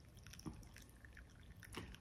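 Near silence: a glass French press plunger being pushed slowly down through coffee, with faint small ticks and one soft click about half a second in.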